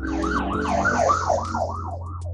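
Siren warbling quickly up and down in pitch, about three to four sweeps a second, fading out near the end.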